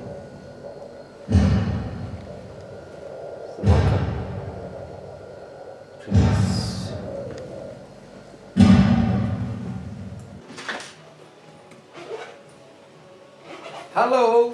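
Four heavy booming thuds, evenly spaced about two and a half seconds apart, each ringing out for a second or two. A couple of lighter knocks follow in the last few seconds.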